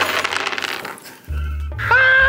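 Small hard jelly beans rattling and crinkling in a packet as it is handled and shaken out, for about the first second. Music then comes in: a low bass hum, then a held note near the end.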